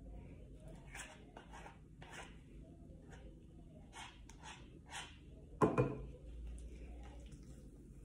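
Spatula scraping and tapping in a plastic mixing bowl while scooping whipped shea butter: a scatter of soft scrapes and clicks, with one louder knock about five and a half seconds in.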